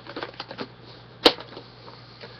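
Light clicks and then one sharp clack about a second in, the sound of a plastic VHS cassette being handled and set down, over a steady low hum.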